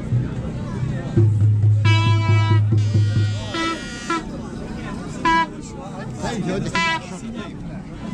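Plastic toy trumpet blown in four toots of one steady pitch, the first and longest about two seconds in, the last two short. A loud low hum sounds underneath for the first few seconds.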